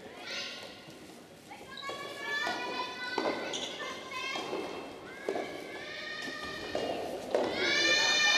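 Young women's voices shouting drawn-out, high-pitched calls, several overlapping; the loudest call comes near the end. A few short thuds fall between the calls.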